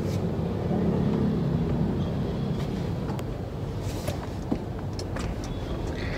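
Steady low road and engine rumble inside the cabin of a moving Honda Civic, a little stronger about a second in, with a few faint clicks.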